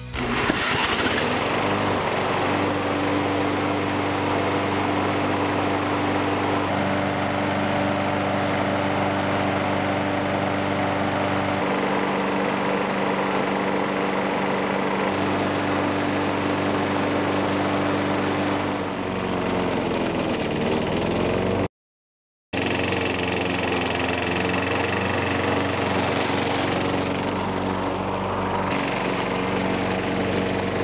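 Walk-behind lawn mower's small single-cylinder engine running steadily on straight octane booster, with no gasoline in the tank. About two-thirds through, its pitch sags and recovers, then the sound cuts out briefly. After that it runs on while mowing grass.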